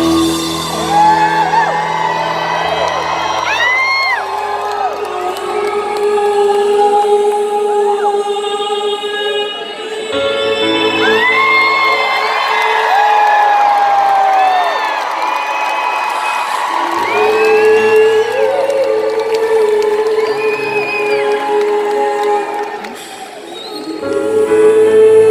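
Grand piano played live in a large hall, holding sustained chords, while audience members whoop and cheer over it.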